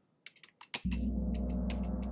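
A few light computer keyboard clicks, then a single sampled gong from a software percussion kit struck about a second in, a low ringing tone that starts suddenly and holds. It is played at a low velocity, which is judged too quiet.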